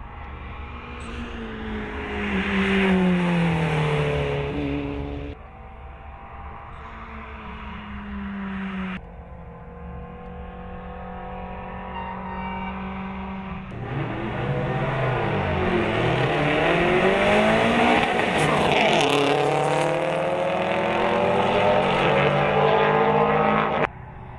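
Rally car engines revving hard and passing by at speed, the pitch dropping as each car goes past. The sound breaks off abruptly a few times between shots. In the last part, rising and falling engine notes cross one another as cars accelerate and pass.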